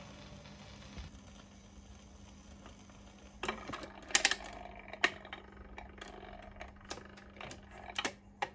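Garrard record changer after the 78 rpm record has ended: a faint steady hum and surface hiss from the turntable. From about three seconds in come irregular sharp clicks and knocks from the tonearm and mechanism, the last as a hand works the arm near the end.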